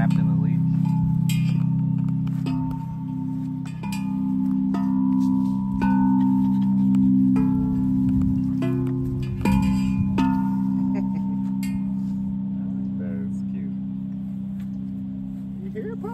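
Large outdoor tubular chimes, tall metal tubes struck one after another with a mallet: about nine strikes over the first ten seconds, each note ringing on and overlapping the others, then the ringing slowly dies away.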